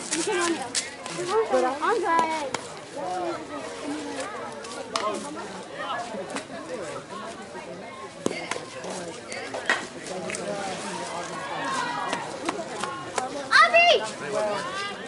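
Indistinct voices of softball players and onlookers talking and calling out, with a few sharp clicks scattered through and a louder shout near the end.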